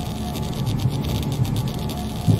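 Outro logo sting: a low, pulsing electronic drone with a fine electric crackle over it.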